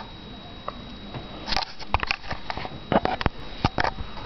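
A cat sniffing close to the microphone: a run of short, sharp snuffs and clicks that starts about a second and a half in and comes thick and fast toward the end.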